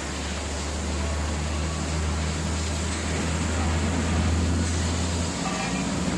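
Hydraulic press brake running: a steady low hum from its hydraulic drive that cuts off about five seconds in, over a steady hiss of workshop noise.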